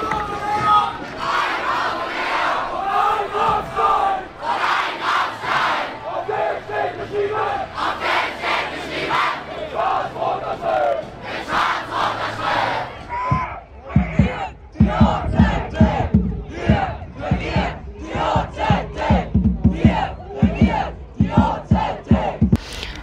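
A team of students shouting a team chant together in unison, then, about two-thirds through, going into a steady rhythmic chant with a strong beat about two to three times a second.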